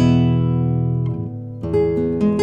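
Background guitar music: a chord rings out and fades, then strumming picks up again about one and a half seconds in.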